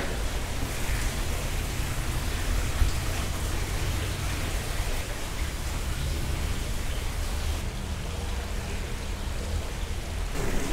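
Steady rushing noise with a low rumble and no distinct events.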